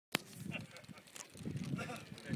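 A sharp click right at the start, then a low, indistinct voice with no clear words.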